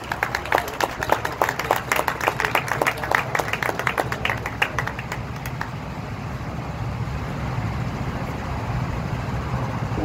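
A small group applauding for about five seconds, the clapping dying away. A steady low engine rumble runs underneath and grows a little louder near the end.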